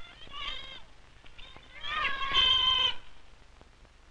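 Children's voices calling out from outside, twice: a short call in the first second, then a longer, louder one near the middle.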